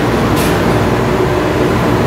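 Paint room ventilation fans running steadily, the outlet fan on high and the intake fan on low, with a brief high hiss about half a second in.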